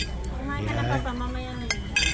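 Tableware clinking as people eat: dishes, spoons, chopsticks and glasses, with a sharp clink near the end, under low voices talking.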